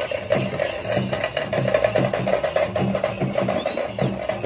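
Fast teenmaar drumming: dense, sharp drum strokes in a rapid, driving rhythm.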